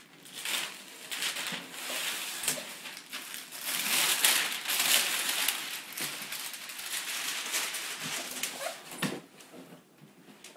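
Clear plastic wrap being pulled off a cardboard box and crumpled, an uneven crinkling rustle that is loudest about four seconds in and dies down near the end.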